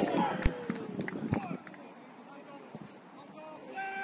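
Footballers shouting on the pitch, with two dull thuds about half a second and just over a second in. After that the shouting dies down to quieter open-air background, with one short held call near the end.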